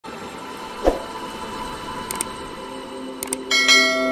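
Channel-intro sound effects over a faint steady musical drone: a short low whoosh about a second in, a couple of light double clicks, then a bright bell-like chime that starts near the end and rings on.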